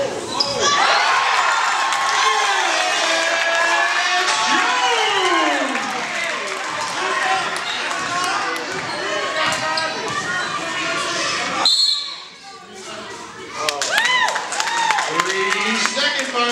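Basketball game sounds on a hardwood gym court: the ball bouncing and sneakers squeaking, under many voices shouting at once. The shouting stays loud for the first twelve seconds or so, then drops suddenly, leaving a few sharp squeaks and bounces near the end.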